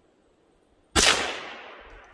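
A single gunshot about a second in, a sharp crack whose report rolls off and dies away over about a second.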